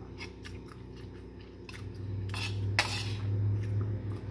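A metal spoon and fork clinking and scraping on a ceramic plate of rice during a meal, with a few short clicks and two louder scrapes about two and a half seconds in.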